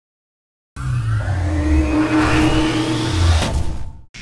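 A loud sound-design swell: a deep rumble under a steady tone, with a thin whine rising slowly in pitch. It starts out of silence about a second in and cuts off suddenly just before the end.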